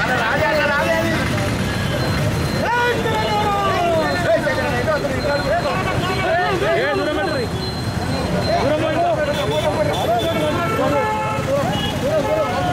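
A crowd of men's voices shouting over one another, loud and continuous, over a low rumble of street traffic.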